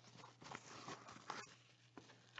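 Near silence with faint rustling of a trading-card pack wrapper and the cards being slid out by hand, with a couple of soft ticks.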